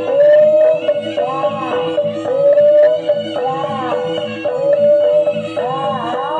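Live jaranan dance music: a high reedy melody held on long notes with arching swoops about once a second, over a steady pulsing percussion rhythm of about four beats a second.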